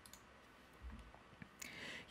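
Near silence with a few faint computer mouse clicks and a soft hiss near the end.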